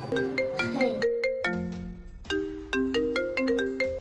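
A mobile phone ringtone playing a melody of short, quickly fading notes in two phrases, with a brief break about two seconds in.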